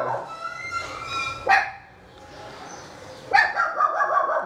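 A dog barking a few short, high barks, once about a second and a half in and again after about three seconds.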